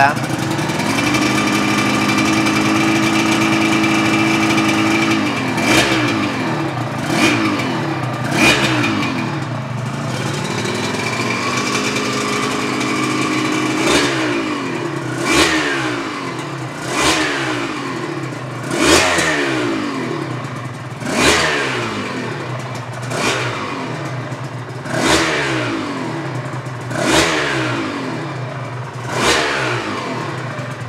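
Aprilia RS 250's two-stroke 90° V-twin running through twin carbon silencers. It is held at raised revs twice in the first half, then blipped about every two seconds, each rev climbing and falling back to idle. The engine is cold and freshly rebuilt, still being run in.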